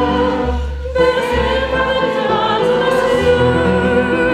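A woman singing a French chanson with vibrato on held notes, accompanied by piano and double bass, with a brief break in the vocal line about a second in.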